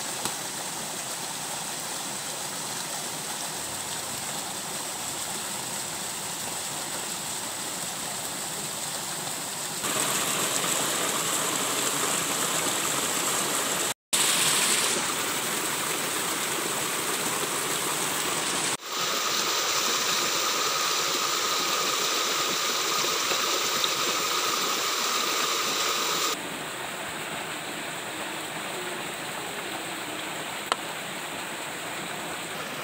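Shallow stream water running steadily over rocks at a small waterfall, with no other distinct sounds. Its loudness jumps up and down abruptly several times, with a brief dropout about halfway through.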